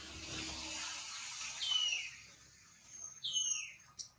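Two short whistled calls, each falling in pitch, about a second and a half apart, over a steady high hiss of outdoor ambience.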